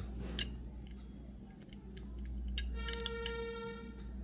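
Faint small clicks and taps from a diecast model car being handled and its wheels moved, over a low steady hum. About three-quarters of the way in, a steady pitched tone sounds for about a second, louder than the clicks.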